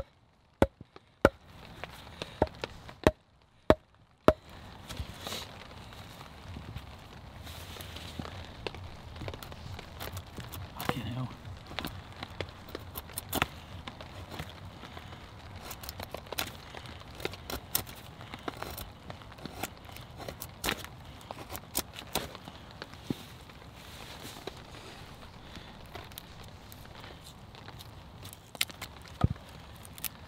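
Batoning wood with a fixed-blade survival knife: a wooden log baton knocks on the blade's spine with a few sharp knocks in the first few seconds. After that come many scattered cracks and clicks as the wood splits and is worked with the blade.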